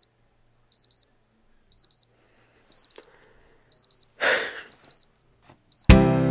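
Digital alarm clock beeping: pairs of short, high-pitched beeps repeating about once a second, going off to wake a sleeper. A short, breathy rush of noise comes about four seconds in.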